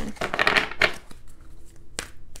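A deck of tarot cards being shuffled by hand, overhand: a rustle of quick card slaps and flicks, busiest in the first second and lighter after.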